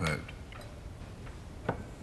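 Quiet room tone with a single sharp click near the end.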